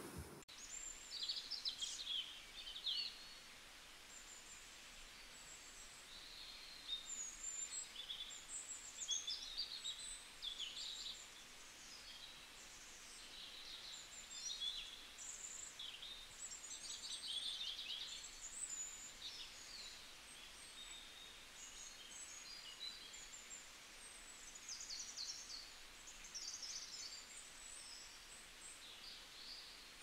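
Faint, high-pitched chirping of small birds, a scatter of short calls over a low steady hiss.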